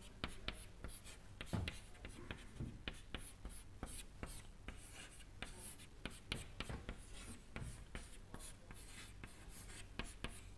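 Chalk writing on a chalkboard: a faint, irregular run of short taps and scratches as the symbols of an equation are written.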